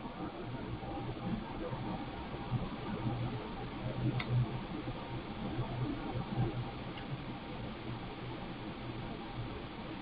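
Low, steady room noise with a faint hum, broken by two faint clicks about four and seven seconds in.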